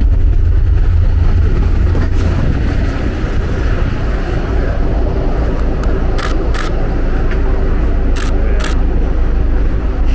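Steady low rumble of a vehicle engine running, mixed with wind on the microphone. In the second half come three pairs of sharp clicks.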